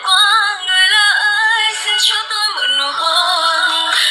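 A song with a high, electronically processed female lead vocal, its melody bending and gliding, with little bass.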